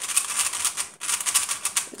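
FangShi JieYun 3x3 plastic speed cube being turned fast, a rapid clicking clatter of layer turns in two runs with a brief break about halfway. The cube is freshly lubed and turning really fast.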